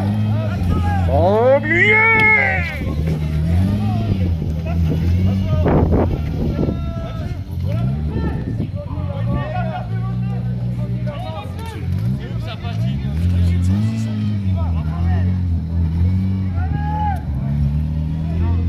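Rally car engine revved hard and unevenly, its pitch rising and falling again and again, as the car sits stuck in snow with the driver at full throttle trying to drive out. Voices shout over it, with one loud rising call about a second in.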